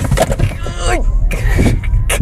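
Dual-motor Kia EV6 GT-Line launching hard from a standstill in sport mode, heard inside the cabin: a low rumble of tyre and road noise that starts suddenly and holds as the car accelerates, with the occupants laughing and exclaiming over it.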